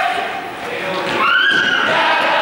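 Young players shrieking and yelling in a large sports hall, with other voices under them: a short high yell at the start, then a longer one about a second in that rises and holds.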